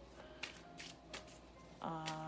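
A boxed tarot deck being handled and opened by hand: about three light clicks and rustles of the box and cards, faint against soft background music.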